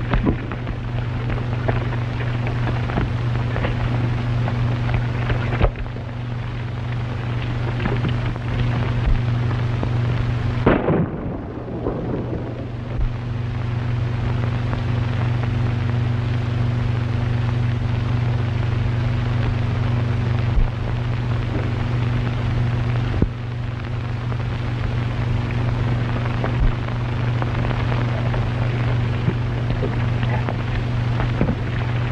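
Worn 1930s optical film soundtrack with no dialogue: a steady low hum and crackling hiss, with a few faint clicks and a louder noise about eleven seconds in.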